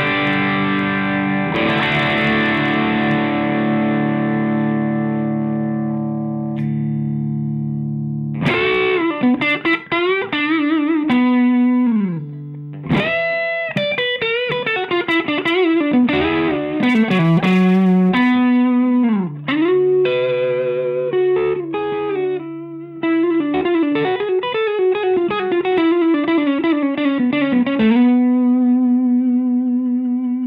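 Fender Deluxe Stratocaster played through a Rothwell Heartbreaker overdrive pedal (gain at maximum, low-gain switch, bass and treble cut for a mid hump) into a Fender Hot Rod Deluxe amp. Overdriven chords ring out and slowly decay, then from about eight seconds in come single-note lead lines with string bends and vibrato, ending on a long held note.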